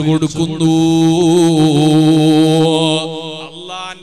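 A man's voice chanting a long, drawn-out melodic phrase with wavering, ornamented pitch. It is held loudest through the middle and fades near the end.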